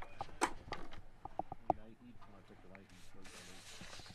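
Faint, indistinct talking in the background, with a few light clicks.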